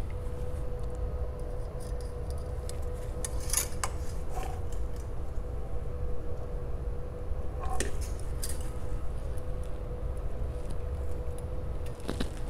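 Engine-oil dipstick handled to check the level: a few sharp metal clicks and scrapes, about four seconds in and again near eight seconds, over a steady low hum with a faint steady tone.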